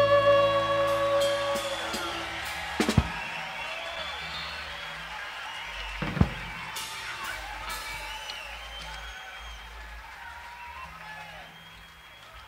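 A country-rock band's final chord, on electric guitars and pedal steel, ringing out and dying away over the first two seconds at the end of a song. Then low stage noise with sharp knocks about three and six seconds in.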